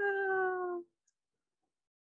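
A single drawn-out voiced call, about a second long, held on one high pitch and falling slightly before cutting off.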